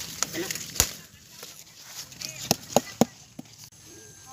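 Sharp snaps as a squash stem is twisted and broken off the vine: one about a second in and three close together near the end.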